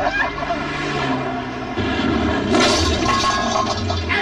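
Car traffic on a road: a steady engine hum with a loud rushing noise of a vehicle going by that swells about halfway through and eases near the end.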